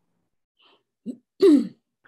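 A person clearing their throat once, about a second and a half in.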